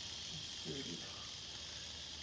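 Red diamond rattlesnake rattling, a steady high buzz that keeps up without a break, with a brief faint murmur of a voice just under a second in.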